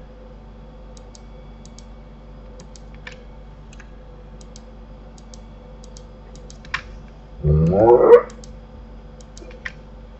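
Light computer mouse clicks and key taps over a steady electrical hum. About seven and a half seconds in, a loud, short vocal sound that rises and then falls in pitch.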